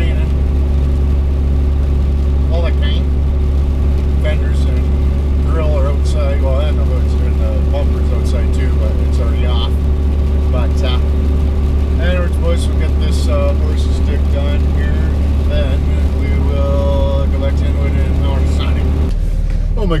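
Pickup truck's engine and road noise droning steadily inside the cab while driving, a loud low hum that changes about a second before the end.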